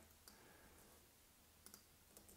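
Near silence: room tone, with a couple of faint short clicks about one and a half seconds in.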